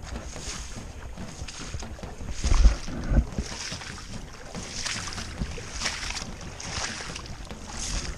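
Boots sloshing through shallow floodwater and matted wet marsh grass, about one splash a second, with two heavier thuds near three seconds in.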